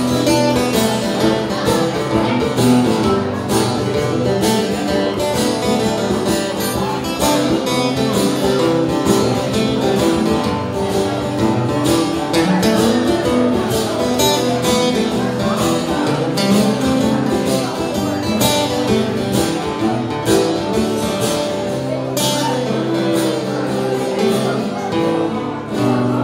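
Two acoustic guitars strumming steadily together while a violin is bowed over them, a live acoustic trio playing an instrumental passage without singing.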